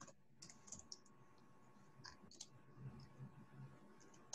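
Faint computer keyboard typing: a handful of quiet, scattered key clicks as a short word is typed.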